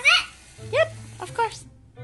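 A child's voice saying a few short words over quiet background music, cut off abruptly into a brief silence near the end.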